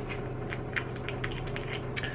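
Faint, scattered light clicks and taps of small make-up items being handled, over a steady low hum.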